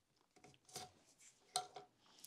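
Faint small metallic clicks as a rocker-arm shaft is slid out of a Suzuki GSX-R1100 cylinder head, a few light taps about half a second in and again around a second and a half in.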